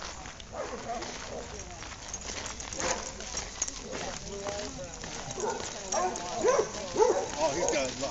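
Indistinct voices of several people talking, growing louder and closer in the last two to three seconds.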